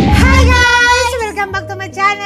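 A high voice sings or calls out one long drawn note, held for about a second and then stepping down in pitch, over intro music with a low bass pulse; a short whoosh opens it.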